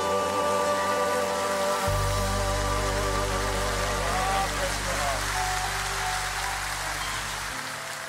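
The closing bars of a southern gospel song: a singer holds the final note with vibrato over a sustained accompaniment, with a low bass note entering about two seconds in and an even hiss-like wash above. The voice fades out about halfway through and the music dies away near the end.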